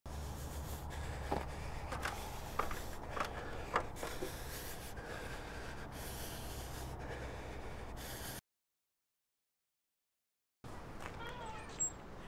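Steady low outdoor rumble with five or six short, high squeaks between about one and four seconds in; the sound cuts out to dead silence for about two seconds, then faint outdoor ambience returns.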